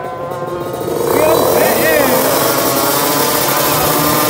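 Drag-racing motorcycle engine running hard, a loud buzzing that swells about a second in and holds, with spectators' voices calling out over it.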